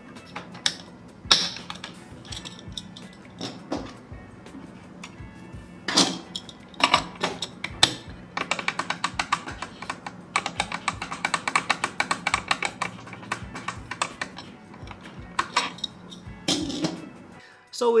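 Tool-less M.2 heatsink cover on a motherboard being pressed and wiggled by hand, its metal plate clicking against the clip in scattered knocks and then a rapid rattling run of clicks for about five seconds in the middle. The rattle comes from the loose fit of the tool-less clamp, which does not hold the heatsink firmly.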